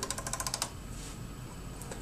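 A quick run of about a dozen small, evenly spaced clicks lasting just over half a second: the detents of the PMA450A audio panel's crew intercom volume knob being turned. Faint room tone follows.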